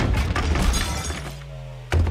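Film trailer soundtrack: music under crashing and breaking sounds as a giant robot blunders through household furniture and objects. The crashing dies away into a low held note about a second in, and a single sharp hit lands just before the end.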